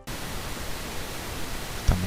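Steady hiss of a voice-recording microphone's noise floor, with one short click just before the end.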